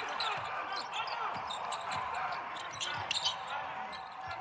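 Basketball being dribbled on a hardwood court, with short squeaks of sneakers on the floor and faint voices on the court.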